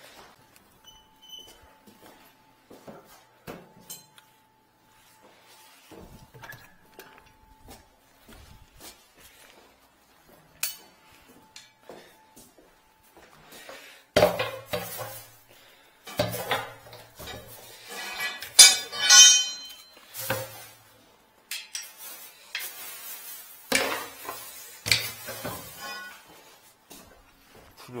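Metal objects clanking and clinking, with scattered light clicks at first and louder strikes that ring about halfway through, the loudest a little past the middle.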